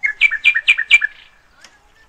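A bird calling close by: a quick run of four sharp, loud notes, each falling in pitch, lasting about a second.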